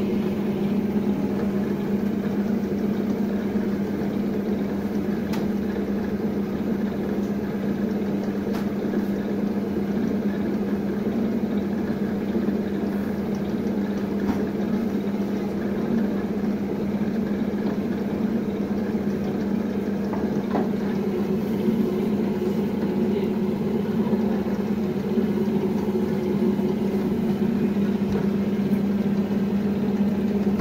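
Electric dough-sheeting machine's motor running with a steady, even hum, a constant low tone throughout.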